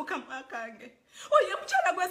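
A woman speaking, with a short pause about a second in.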